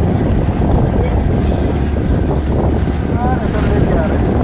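Steady low rumble of a motorboat under way, with wind buffeting the microphone.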